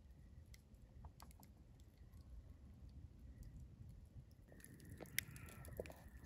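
Near silence: faint background hush with a few scattered faint clicks.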